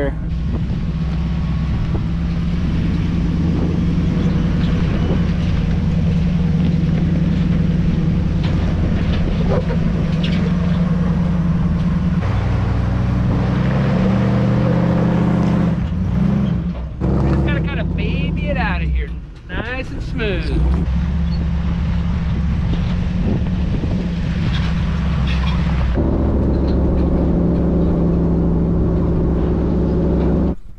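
An off-road truck's engine runs steadily at low revs while driving and towing a loaded trailer. The sound changes abruptly a few times, with a short dip and break in the middle.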